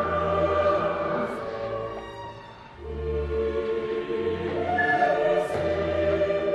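Dramatic choral music, voices held on long notes over a deep bass that changes every second or two.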